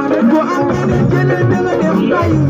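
Loud live band music played through a PA system, with keyboards and a moving bass line.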